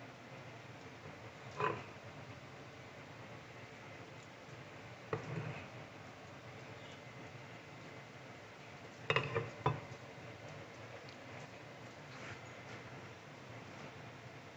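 Knife blade scraping and knocking against a paper plate as chopped meat is slid off it onto tortillas: a few short scrapes and taps, one about two seconds in, one around five seconds, and a quick run of three sharp clicks a little after nine seconds.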